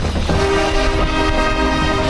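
Marching band brass section holding a loud, sustained chord that comes in about a quarter of a second in.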